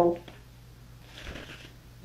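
An African grey parrot sparring with a cat: the end of a short, voice-like call from the parrot at the very start, then a brief, soft hiss about a second in.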